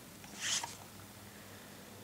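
A small cardboard chocolate box being handled, with one brief soft swish about half a second in over faint room tone.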